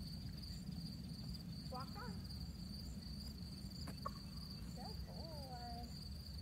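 Insects trilling steadily in a high, even pulse over a low steady rumble. A few brief soft gliding voiced sounds come around two seconds in and again near the end, with a single click about four seconds in.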